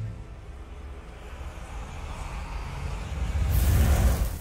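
Logo-animation sound effect: a low rumble that builds and swells into a loud whoosh about three and a half seconds in.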